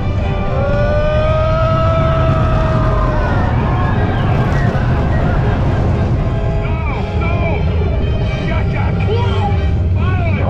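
Steel roller coaster train running at speed, heard from on board: a loud, steady low rumble of the train on the track and wind buffeting the microphone. Riders let out one long held scream in the first few seconds and shorter shrieks near the end.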